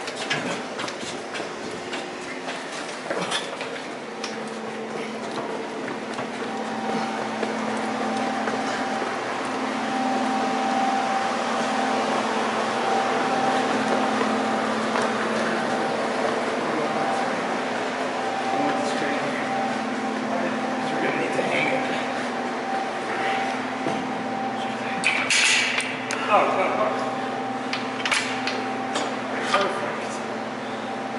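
Steady machine hum with faint, indistinct voices in the background, and a few sharp metallic clinks near the end.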